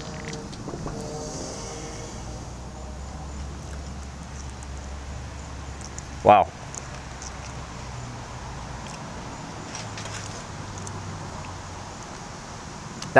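Steady low hum of a distant engine in the background, with a brief voiced 'mm' from a man tasting a fig about six seconds in.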